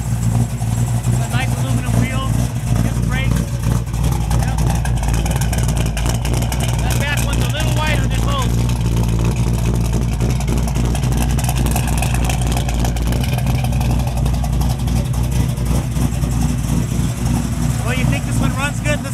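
A 468 big-block Chevy V8 with a double-pumper Holley carburettor idling steadily, a low even note with no revving.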